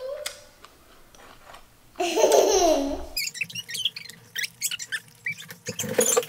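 A brief laugh about two seconds in, falling in pitch, then a run of quick clicks from chopsticks tapping and scraping a ceramic rice bowl as rice is scooped.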